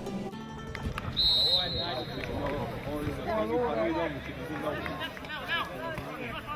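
Amateur football match sound: players and spectators shouting and calling. A short, steady high whistle tone sounds about a second in.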